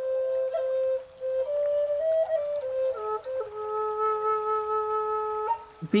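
Solo flute playing a slow melody that steps between a few notes. It ends on one long, low held note about halfway through, which stops shortly before the end.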